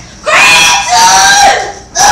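A child's loud, high-pitched scream lasting about a second and a half.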